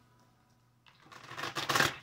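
A deck of tarot cards being shuffled by hand. It starts about a second in as a rustle of cards and grows louder near the end.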